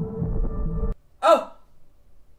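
Low droning horror-film score with a pulsing beat that cuts off abruptly just under a second in, followed by a single short, sharp gasp.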